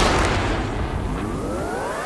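Title-sequence sound effects: the rumbling tail of a cinematic boom fades out. About half a second in, a synthesized riser starts, with several tones sweeping steadily upward together.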